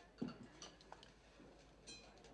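Faint table-service sounds: a silver serving dish and tableware being handled, with light ticks and a short metallic clink near the end.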